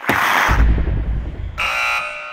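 Logo sting sound effect: a sudden hissing whoosh with a deep low boom under it, then about one and a half seconds in a bright ringing chord that slowly fades.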